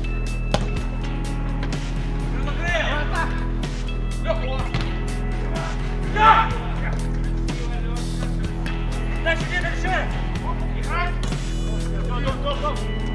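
Live sound of an outdoor mini-football match: short shouts from the players, loudest about six seconds in, and a few ball kicks, over a steady hum.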